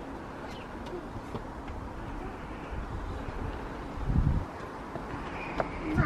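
A pigeon cooing over a steady low outdoor rumble.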